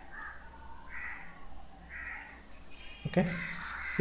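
Faint bird calls in the background, three of them about a second apart, followed by a spoken 'okay' near the end.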